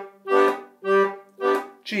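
Bass end of a Castagnari D/G melodeon playing an oom-pah bass line, G bass note and G chord in alternation: short separated strokes about half a second apart, chord, bass, chord.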